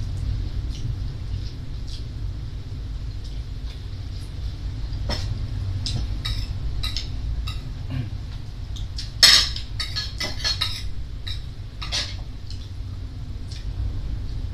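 Spoons clinking and scraping on plates while two people eat, as scattered light clicks with one louder clatter about nine seconds in, over a steady low hum.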